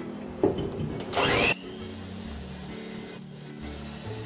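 Electric hand mixer whirring as its beaters whip egg whites and sugar into meringue in a glass bowl, with a short loud noisy burst about a second in.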